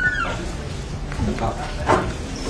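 Brief, faint snatches of people talking in a courtroom, with a short high squeak-like tone at the very start.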